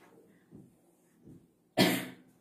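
A woman's single short, loud cough near the end; before it only faint room noise.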